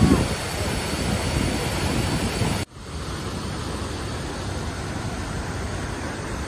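Steady rush of flowing stream water. It is broken by a sudden brief dropout a little under three seconds in, then goes on slightly quieter.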